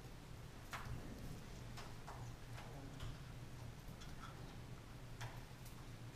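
Quiet classroom room tone: a steady low hum with scattered faint clicks and taps at irregular intervals.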